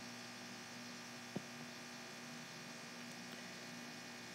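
Low, steady electrical hum in the recording, with one short faint click about a second and a half in.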